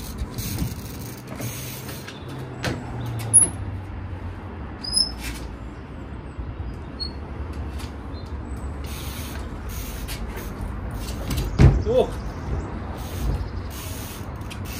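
Trials bike hopping and landing on wooden pallets: a few sharp knocks and creaks, then two heavy thuds about twelve seconds in, the loudest sounds. A steady low rumble of road traffic runs underneath.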